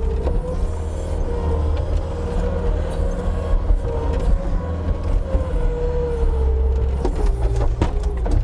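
Bobcat T320 track loader's diesel engine running at high revs under load as the bucket digs into dirt and lifts, its pitch dipping and recovering slightly. A few sharp knocks near the end.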